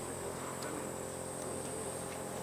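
A steady low mechanical hum with a constant high-pitched whine above it, unchanging throughout.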